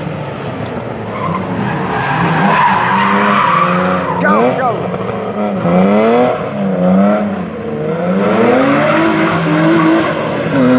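BMW 3 Series (E36) sedan drift car, its engine revving up and down over and over, with a quick sweep about four seconds in. Its rear tyres spin and squeal through a smoky sideways slide.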